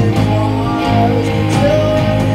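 A live indie rock band playing at full volume: electric guitars, bass guitar and drums, with cymbal hits over a steady bass line.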